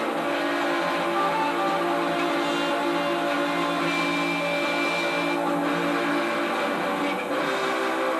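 Rock band playing live, electric guitars holding long sustained chords with drums behind, at a steady level.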